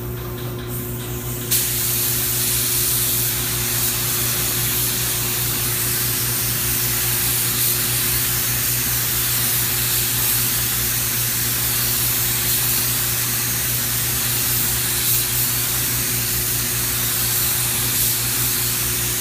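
Gravity-feed spray gun spraying clear coat on compressed air: a steady hiss that starts suddenly about a second and a half in and holds even, over a low steady hum.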